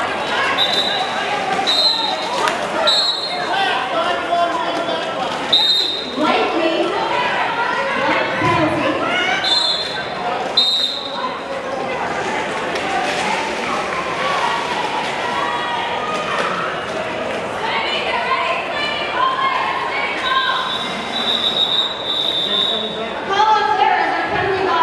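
Roller derby referee whistles: short blasts several times in the first half, then a longer run of whistles near the end that closes the jam. Under them, quad skates knock and roll on the floor against a steady murmur of crowd voices in a large, echoing hall.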